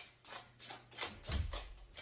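A deck of tarot cards being shuffled by hand, a run of soft card clicks several a second.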